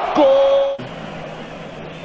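A football commentator's drawn-out 'gol' shout, held on one note, cut off abruptly under a second in. After it comes a quieter, steady hubbub of stadium crowd noise from the television broadcast.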